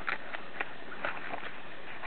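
Sheets of a patterned paper pad and cardstock rustling and flicking as they are leafed through by hand, with a few soft taps.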